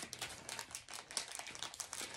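Plastic packaging of a small diamond-painting toolkit crinkling and rustling as it is opened and handled, a quick run of small, faint crackles.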